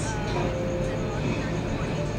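Steady low hum of a car heard from inside its cabin, with faint talk underneath.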